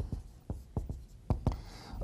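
Writing on a lecture board: a handful of short, light taps and strokes, about six in all, as points are written up.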